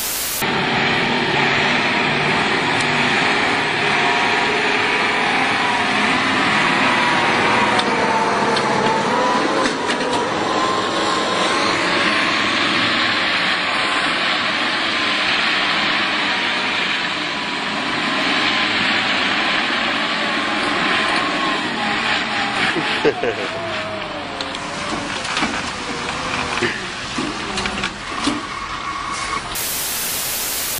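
Heavy truck's engine running hard as its wheels spin on snow, with a whine that wavers up and down in the middle stretch. A short burst of static at the start and again near the end.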